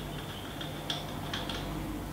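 A few light clicks and small plastic-and-metal knocks as the clamp and fittings of a tripod head holding a horizontal monopod are handled and adjusted, the sharpest about a second in. A faint steady hum lies underneath.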